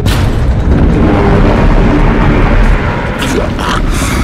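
Cinematic boom sound effect of a heavy impact: a sudden hit at the start, then a deep rumble that carries on, over background music.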